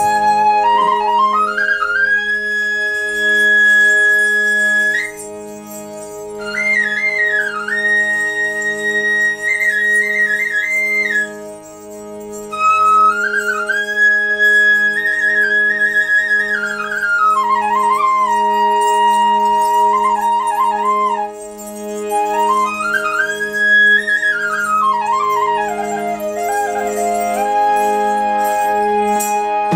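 Bansuri, a bamboo transverse flute, playing a slow folk melody. It holds long high notes and slides between them, with short pauses between phrases. Underneath, a harmonium keeps up a steady, evenly pulsing low accompaniment.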